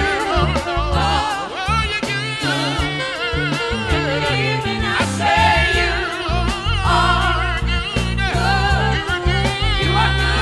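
Gospel praise team of several voices singing into microphones over instrumental accompaniment, the voices gliding and wavering on held notes above a steady low bass line.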